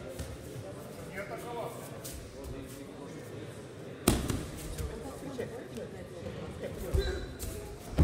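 Judo bout on tatami mats: a sharp thud about four seconds in and a duller low thump near the end as the two fighters go down onto the mat during a throw attempt.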